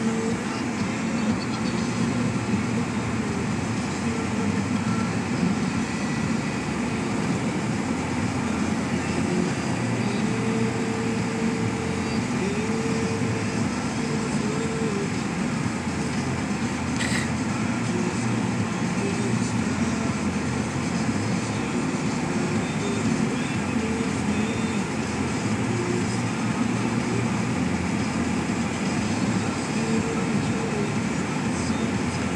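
Steady road and engine noise inside a moving car's cabin, tyres running on a wet, slushy road. There is one brief click a little past halfway.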